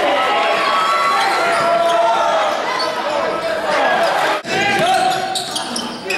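Basketballs bouncing on a gym floor amid players' shouting voices, echoing in a large hall, with a brief sharp drop in the sound about four and a half seconds in.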